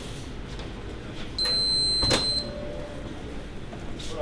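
Electronic door access reader beeping once, a steady high tone about a second long, with a sharp click of the door lock releasing near its end as the door is opened.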